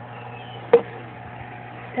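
A single sharp click or tap about three-quarters of a second in, over a steady low hum.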